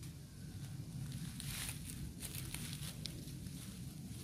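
Footsteps and body movement in dry fallen leaves, a cluster of crunching and rustling about halfway through, over a low steady rumble.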